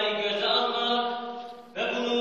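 A man's voice chanting Arabic in a melodic, sustained style, holding long steady notes. It fades into a short breath pause near the end, then the next phrase starts.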